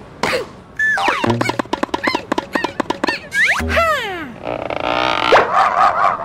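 Cartoon sound effects and squeaky character vocal noises: short sliding squeaks, a quick run of taps about a second in, a low thud, and a rushing whoosh near the end.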